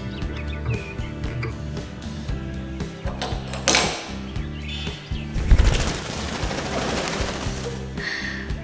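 Background music with a steady beat. From about five seconds in, a loud, fast rattle joins it and runs on to the end.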